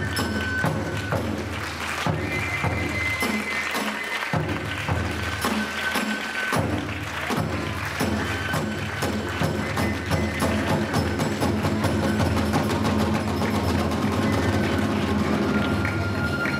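Iwami kagura festival music: the large ōdō drum and a small drum beaten with sticks in a fast, dense rhythm, under high held flute notes.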